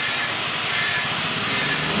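A steady, even hiss with no break or change, such as a machine running in a workshop.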